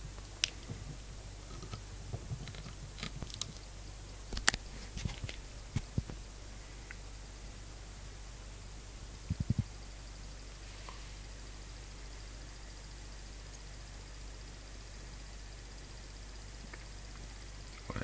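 Steady low hum with a faint high whine, broken by scattered sharp clicks and knocks in the first few seconds and a quick run of about four clicks a little past the middle.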